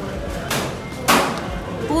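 Biting and chewing into a crisp fried snack: two short crunches about half a second apart, the second louder.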